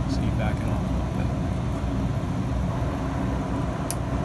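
Roof-mounted RV air conditioner running: a steady low hum with the rush of air from the ceiling vents, with a short click near the end.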